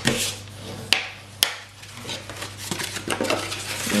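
A bone folder rubbed firmly along the score lines of folded cardstock, burnishing the creases with repeated scraping strokes, with two sharp clicks about a second in.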